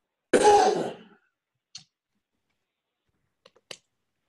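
A single loud cough, followed by a few faint clicks.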